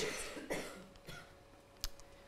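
Short coughs, two or three in the first second, then a single sharp click near the end from a handheld presentation remote advancing the slide.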